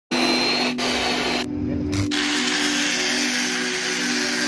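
Abrasive cut-off discs grinding through steel, first on a chop saw and then on a handheld angle grinder: a steady high motor whine under a harsh hiss of cutting. The hiss drops out briefly about three-quarters of a second in, and again for about half a second from around a second and a half in.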